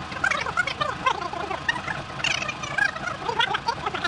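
Birds chirping and chattering throughout, a busy run of short calls that rise and fall in pitch.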